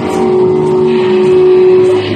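Live heavy metal band with distorted electric guitar and Jackson electric bass. It holds one long sustained note that swells slightly louder, between riff passages.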